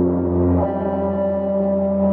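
Depressive black metal track playing slow, sustained droning chords with no drum hits, the chord changing about half a second in.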